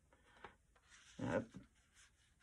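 Faint rustling of paper and card as hands handle a decorated paper journal pocket, followed by a brief spoken "I uh".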